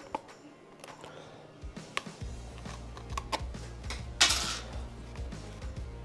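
Small clicks and scratches of tweezers picking out embroidery stitches from a cap, with one short scratchy rasp about four seconds in.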